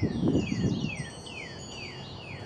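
A songbird singing a run of descending whistled notes, about three a second, over faint, steady high ringing tones, with low rustling in the first second.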